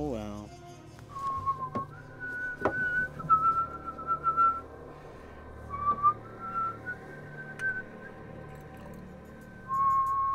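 A slow whistled tune of long, held notes that step between a few pitches, broken by a few sharp clicks.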